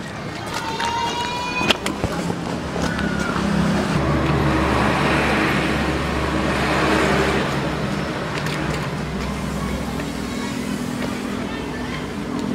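Road traffic: a passing motor vehicle, its noise swelling to a peak about halfway through and then fading, over a low steady hum.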